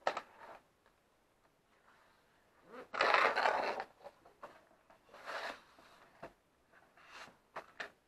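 Large sheets of scrapbook paper rustling and sliding against each other as they are handled and laid down, in several short bursts; the loudest, about three seconds in, lasts nearly a second.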